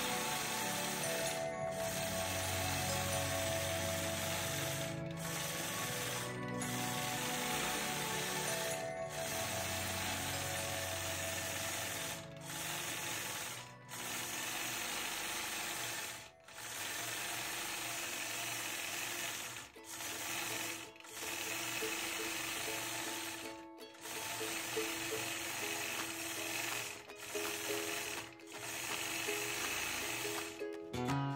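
Longarm quilting machine running as it stitches, a steady mechanical sound broken by a dozen or so brief pauses where the stitching stops and restarts.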